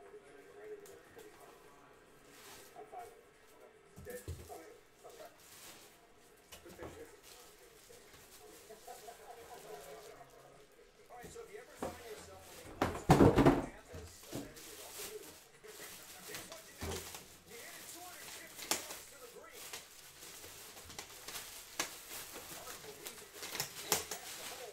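Clear plastic wrap crinkling and rustling as it is handled and pulled off a metal case, with one loud, brief burst of sound about halfway through.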